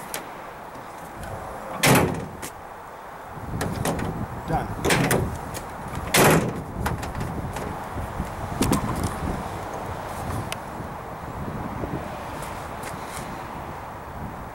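Steel pickup tailgate of a 1995 Dodge Ram shutting with two loud bangs, about four seconds apart, with softer latch and handling noises between and after: the new handle and its latch are being tested.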